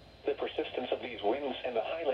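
NOAA Weather Radio broadcast: the automated computer voice reading a lakeshore flood warning, starting again after a brief pause.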